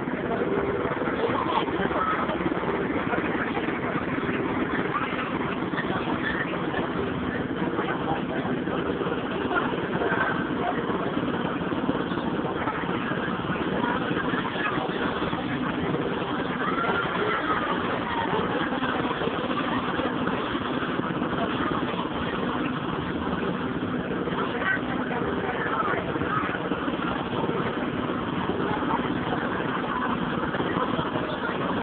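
Children's helicopter carousel ride running: a steady mechanical hum, with the voices of people around mixed in.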